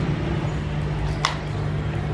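Steady low electrical hum from a powered-up active speaker's amplifier, with one short sharp sound a little over a second in.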